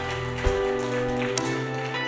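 Soft live worship-band music under the service: sustained held chords over a steady low bass note, with the chord changing about one and a half seconds in.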